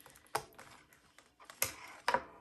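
Hands handling a clear plastic cash binder and its snap-button envelope: two sharp plastic clicks about a second apart, with light taps between.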